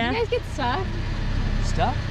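Pickup truck engine idling with a steady low rumble.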